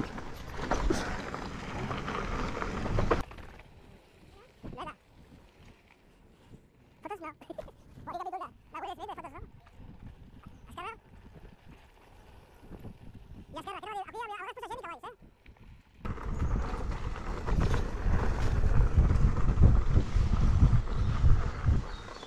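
Riding noise from an off-road electric unicycle ride: wind rumbling on a helmet-mounted microphone with tyres rolling over gravel and dirt, loud at the start and again for the last six seconds. A quieter stretch in the middle carries a few short snatches of voices.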